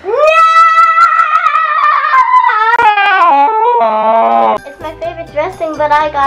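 A child's long, high-pitched drawn-out yell, held for about four and a half seconds and sliding lower in pitch toward the end, over background music.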